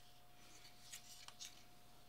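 Near silence with a few faint clicks from a circuit board and side cutters being handled.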